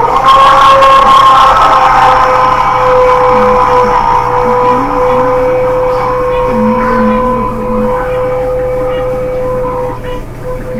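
A loud, steady tone made of several pitches at once, starting suddenly and slowly fading.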